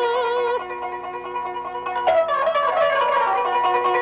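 A woman's held sung note ends about half a second in. A kanun (Middle Eastern plucked zither) then carries on alone, with a run of plucked, ringing notes starting about two seconds in.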